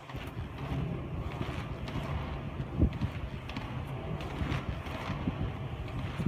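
Hard 80 mm, 85A inline skate wheels rolling on asphalt, a steady rolling noise, with wind on the microphone and one sharp knock about three seconds in.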